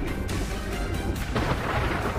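A deep, steady rumble under background score music.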